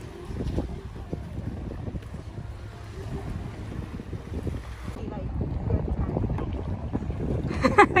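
Wind buffeting the microphone, a steady low rumble with no clear tone. A voice starts just before the end.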